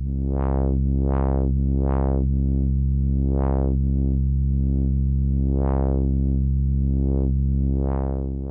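A low, sustained synthesizer note whose filter cutoff is driven by an Elby Designs ChaQuO chaos generator. The tone brightens and darkens in smooth, irregular sweeps, roughly one to two a second and each of a different height. The chaos circuit's damping is being turned up, which leaves fewer resonant warbles.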